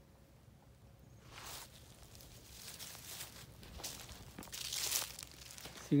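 Footsteps crunching and rustling through dry, cut corn stalks and leaves on the ground, starting about a second in and growing louder toward the end.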